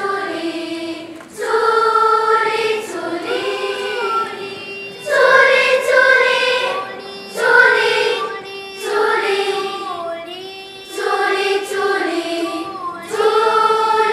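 Children's choir singing in unison, in short phrases that break off every second or two.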